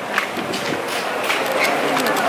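Indistinct chatter of people nearby over a steady background hiss of a busy public walkway.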